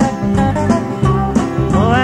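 Country band playing plucked and strummed string instruments in the gap between sung lines, with the singer coming back in on a drawn-out 'Oh' near the end.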